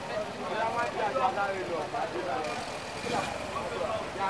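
Background voices talking over general street noise, with no clear words.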